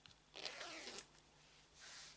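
Brief rasping rustle, about half a second long, of a fabric panel with a sewn-in zipper being handled and turned over.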